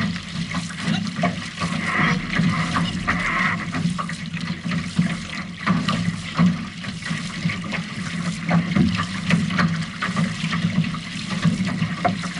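Water splashing and rushing along the hull of an outrigger canoe under paddle, with paddle blades entering and leaving the water in uneven strokes.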